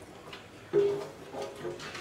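Spatula knocking against a speckled enamelware roasting pan while caramel popcorn is scraped out. The pan rings with a short, clear tone about three-quarters of a second in, then more faintly near the end.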